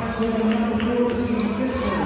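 A basketball bouncing a few times on a hardwood gym floor, with spectators' voices talking in the hall.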